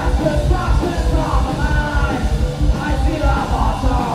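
A thrash metal band playing live at full volume: fast drumming with rapid kick-drum beats under distorted electric guitars, and a harsh shouted vocal over the top.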